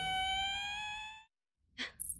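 The last held note of the dramatic background score, a single sustained tone that rises a little in pitch and fades out just over a second in. After a brief silence comes a short breathy sigh near the end.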